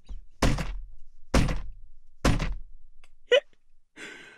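Three heavy, dull thumps about a second apart, each with a deep low boom that dies away.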